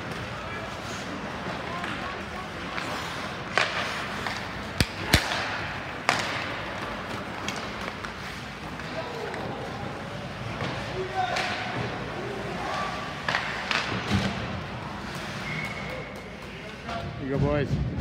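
Ice hockey play in an indoor rink: a steady din of skating and distant voices, with several sharp cracks of puck and sticks striking, loudest between about four and six seconds in.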